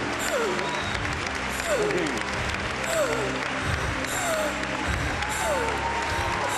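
A congregation applauding, with voices calling out in short falling cries, over sustained background music with held chords.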